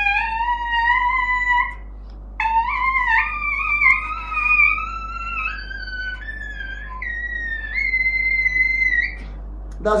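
Trumpet mouthpiece buzzed on its own, without the horn, giving a thin brassy tone. It plays a run of notes stepping upward, breaks off briefly about two seconds in, then a longer phrase of notes rising and falling that stops about a second before the end.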